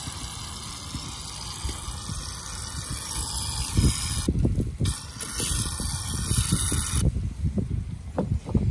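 Aerosol can of shaving cream spraying foam into a plastic bowl: a steady hiss that breaks off for half a second about four seconds in, then resumes and stops about seven seconds in. Low bumps and rumbles run underneath.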